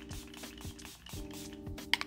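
Soft background music with steady held notes, and a few short hissing spritzes from a setting-spray pump mister, the clearest just before the end.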